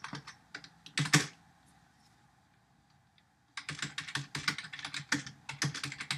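Typing on a computer keyboard: a few keystrokes in the first second or so, a pause of about two seconds, then a quick, steady run of keystrokes.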